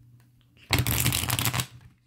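Tarot deck riffle-shuffled by hand: a rapid, dense run of cards flicking together for about a second, starting under a second in and fading out.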